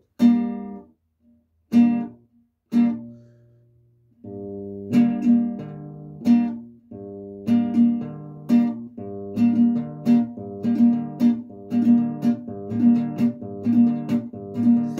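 Classical acoustic guitar strummed with the thumb and index finger, alternating bass notes with down-and-up chord strokes, the chords cut short as the left hand eases off the strings to mute them. Three short strums come first, then after a brief pause a steady rhythmic strumming pattern runs on.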